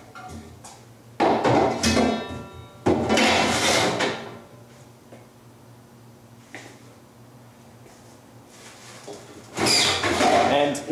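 Two bursts of scraping and knocking, about a second in and about three seconds in, from a screen-printing frame being handled and slid into a storage cabinet, followed by a single faint knock and a low steady hum, with more handling noise near the end.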